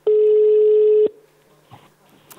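Telephone ringback tone on an outgoing call: one steady ring tone lasting about a second, the sign that the called phone is ringing at the other end.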